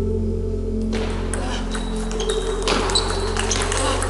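Table tennis rally: a quick run of sharp ball clicks off bats and table starts about a second in, over steady background music.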